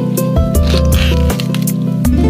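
Background music: a plucked-string, guitar-like track with a steady beat and bass line.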